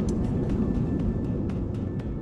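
Jet airliner engines at takeoff power, heard as a steady low rumble that eases slightly toward the end.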